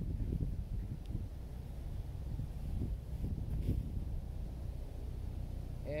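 Wind buffeting the microphone: a steady, uneven low rumble with no other clear sound.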